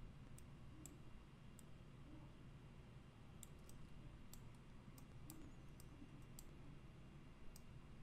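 Faint, irregular clicks of a computer mouse, about fifteen of them, bunched together in the middle stretch, over a steady low background hum.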